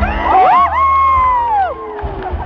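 Excited high-pitched screaming from the crowd: one voice rises sharply, holds a long shrill note for about a second, then falls away. Under it a second voice glides downward, over general crowd noise.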